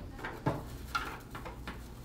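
Twine-wrapped bark wire and a dry vine wreath being handled and twisted together: a few small clicks and crackles, the sharpest about half a second in and two more close together about a second in, over a steady low hum.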